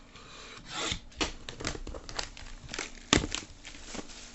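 Hands working at a sealed trading-card box: plastic wrap rasping and crinkling as it is rubbed and torn, cardboard scraping, and one sharp knock a little after three seconds in.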